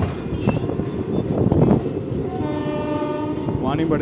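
Train horn sounding one steady note for about a second and a half, starting about two seconds in, over the rumble of the moving train.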